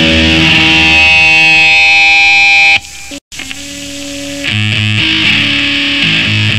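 Loud distorted electric-guitar hardcore band music from a cassette demo. About three seconds in, one song cuts off; after a moment of dead silence a quieter sustained guitar note swells, and about a second later the next song starts with chugging distorted guitar and drums.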